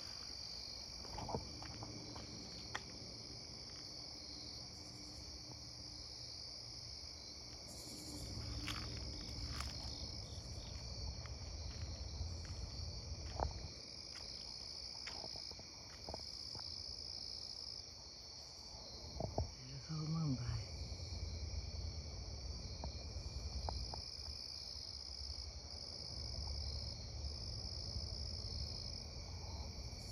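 A steady, high-pitched chorus of night insects that swells and eases every few seconds, over a faint low rumble.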